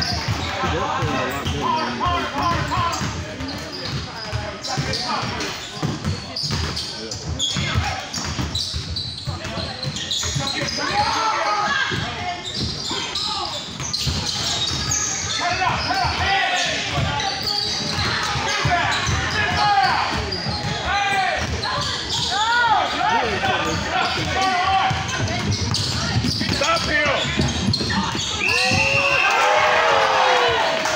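Basketball game sounds echoing in a large gym: the ball bouncing on the court, sneakers squeaking, and players and spectators calling out. A short, steady referee's whistle sounds near the end as play stops.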